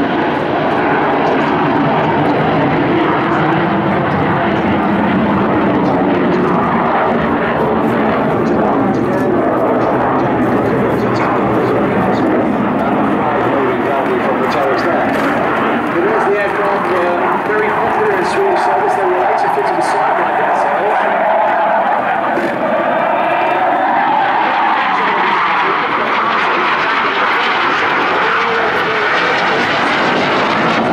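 Jet noise from a Hawker Hunter flying a display pass: a loud, continuous rushing engine sound, with a whine that climbs and then drops in pitch over the second half as the jet passes.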